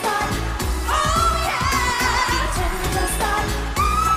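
K-pop dance song: a woman's voice sings held, wavering notes over a steady beat.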